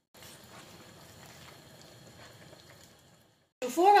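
Creamy tomato sauce simmering in a pan: a faint steady hiss with a few soft ticks, which cuts off about three and a half seconds in.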